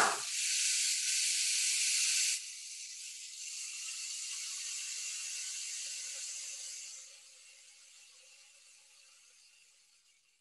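Rainmaker toy, a clear tube of coloured plastic spirals, tipped so its beads trickle down with a steady rushing hiss. It is louder for the first two seconds, then softer, and dies away over the last three seconds. It is a soothing sound used as a signal to children to be quiet.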